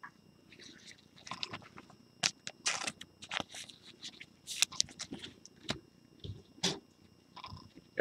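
Trading cards being handled and shuffled in gloved hands: faint, scattered rustles, small clicks and crinkles.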